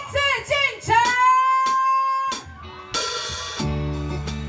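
A woman's voice sings out a long, drawn-out note; about three seconds in, a cymbal crash and the live band come in together, holding a chord on electric guitar and bass over the drums.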